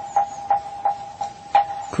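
Moktak (Korean Buddhist wooden fish) knocked at a steady pace, about three strikes a second, each knock leaving a brief ringing tone.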